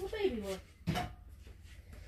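A short wordless vocal sound at the start, falling in pitch, then a single knock about a second in, over a faint steady low hum.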